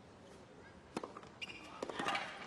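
A tennis ball struck on a slice serve: one sharp racket-on-ball hit about a second in. A few lighter knocks and clicks follow from the ball in play, over quiet court ambience.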